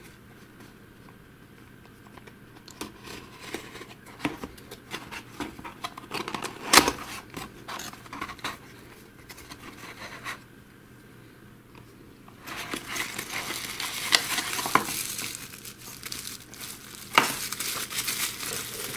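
A small cardboard box being opened with a craft knife: scattered scrapes and clicks, with one sharper snap about seven seconds in. From about twelve seconds in, bubble wrap crinkles steadily as it is handled and pulled out of the box.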